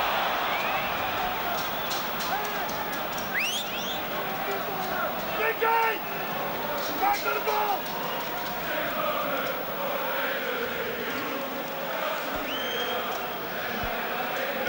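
Football stadium crowd: a steady din of many voices shouting, with a few rising whistles and several sharp cracks in the middle.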